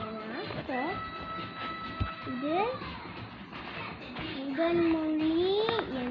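A child's voice making wordless sing-song sounds with long pitch slides: a long held high note in the first half, and a slow rising glide that swoops up near the end.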